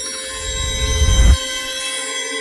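Logo-reveal sound effect for a news title card: sustained high electronic tones over a low rumble that swells to a peak about a second and a quarter in, then drops back, and begins to swell again near the end.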